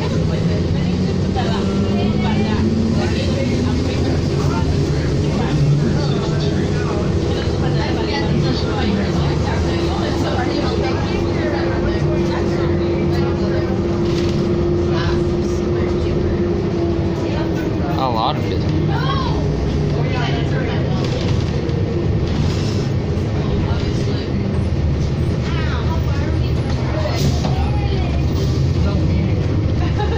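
Inside a 2007 New Flyer D40LFR diesel city bus on the move: a steady engine and drivetrain rumble with a whine that rises over the first few seconds as the bus pulls ahead, holds steady through the middle, then falls away as it slows.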